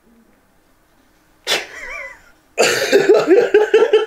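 Quiet for about a second and a half, then a sudden short vocal outcry, and from about two and a half seconds in, loud laughter from two men.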